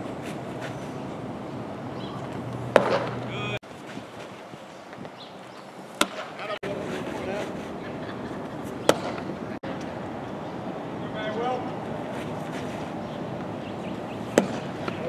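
A baseball popping into a catcher's mitt three times, a sharp smack every three seconds or so, over steady outdoor background noise and faint voices.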